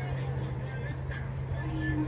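A steady low hum, with faint distant shouts and calls from players across a soccer field.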